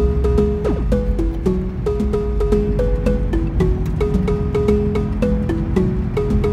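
Background music: a melody of short held notes stepping up and down over a steady clicking beat, with a low steady rumble of the car on the road underneath.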